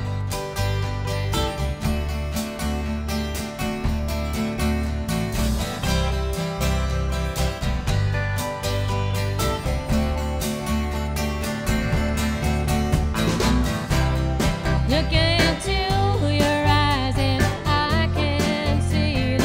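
A live band playing an upbeat country-roots song on electric guitar and drums with a steady pulsing low end. A woman's voice starts singing about fifteen seconds in.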